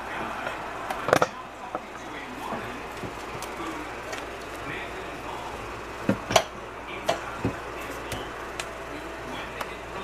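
Silicone spatula scraping thick cake batter out of a glass mixing bowl into a metal loaf pan, with a few sharp taps of the spatula and bowl against the rim, a pair of them about six seconds in.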